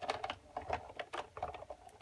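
Sizzix Big Shot embossing machine being hand-cranked, its rollers pulling the plates and an embossing folder through with a rapid, irregular clicking.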